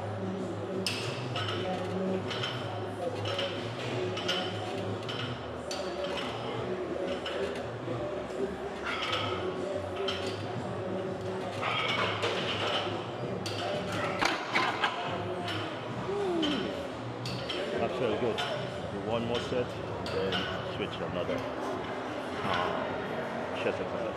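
Gym background of music and indistinct voices, with a few sharp metallic clinks, the weight plates of a plate-loaded chest press machine knocking during a set, about halfway through.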